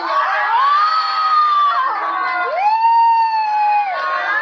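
A voice letting out two long, high-pitched held shrieks, each sliding up and then holding, the second starting about two and a half seconds in: a reaction to a birthday surprise prank.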